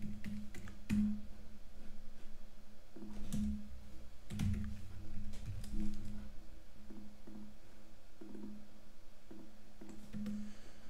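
Computer keyboard keystrokes in short clusters, a few clicks at a time near the start and again around the middle, over soft background music with a low repeating note.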